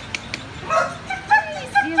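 A dog whining in short, high yips from about halfway through, after a couple of faint clicks.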